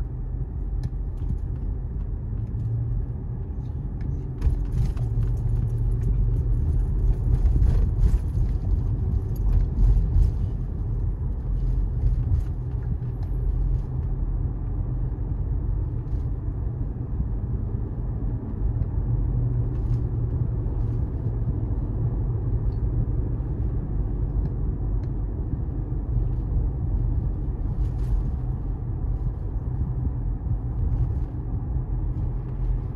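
Steady low rumble of tyre and engine noise heard from inside a moving car. It gets louder and hissier for about ten seconds, starting about four seconds in.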